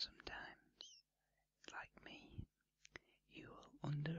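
A man's whispered speech in short phrases, with a few small clicks between them.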